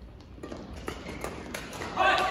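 A badminton rally: sharp hits and taps, a few a second and growing louder, from rackets striking the shuttlecock and players' shoes on the court.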